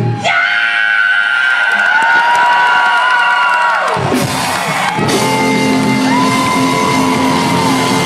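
Live band in a hall: the full groove stops and long held notes ring out with the bass and drums gone for about four seconds, then the low end returns under another sustained chord. Crowd yells and whoops over it.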